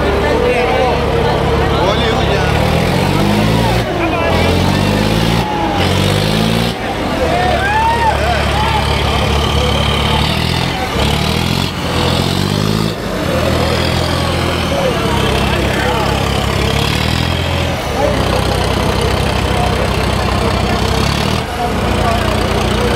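John Deere 5210 tractor's diesel engine revving in repeated quick surges, the revs climbing several times and then held steady at high speed, over a crowd shouting and chattering.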